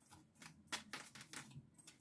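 A deck of tarot cards being shuffled and handled by hand: a run of faint, irregular card clicks and flicks.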